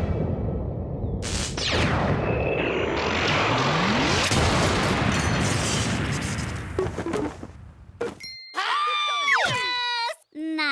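Cartoon action sound effects: a loud, long noisy blast with a falling whoosh and then a rising one, thinning out after about seven seconds and giving way near the end to short sliding pitched sounds.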